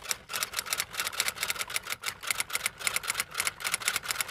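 Typing sound effect: a rapid, irregular run of key clicks, several a second.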